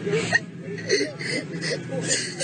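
A man sobbing: a string of short, catching sobs and small whimpers with sharp breaths between them.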